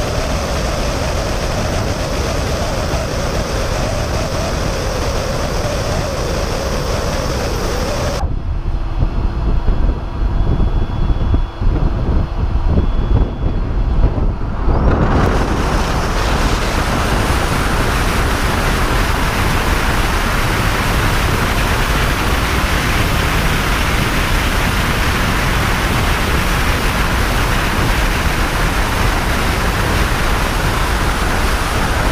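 Wind rushing over a camera mounted on the outside of a Tesla Model S at highway speed, mixed with tyre and road noise, as a steady loud hiss. About eight seconds in the sound turns to a duller, muffled rumble with a few thumps for about seven seconds, then the full hiss returns.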